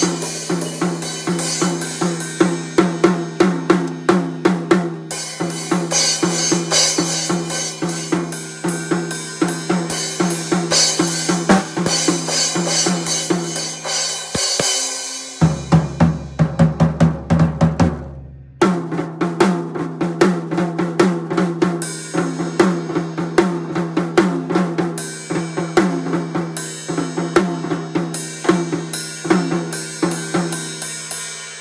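Acoustic drum kit played continuously: a dense beat of snare, bass drum, hi-hat and cymbal strokes. About halfway through, the cymbals drop out for roughly three seconds while lower drums carry the pattern, then the full beat comes back.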